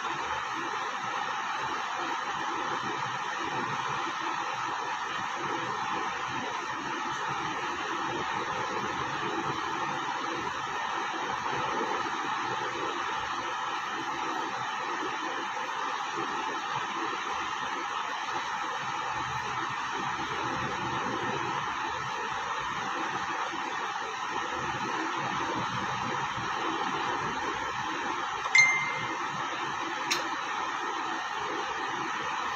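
Steady hissing background noise with no speech. Near the end there is a single short, high ding.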